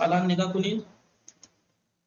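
A man's voice speaks briefly, then two faint clicks about a sixth of a second apart, from a computer mouse.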